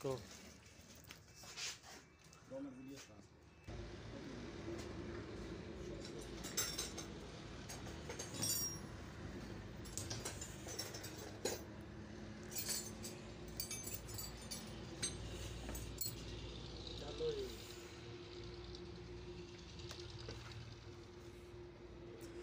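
Intermittent metallic clinks and taps of hand tools and loose metal parts as a home water pump motor is dismantled, over a steady low hum that starts a few seconds in.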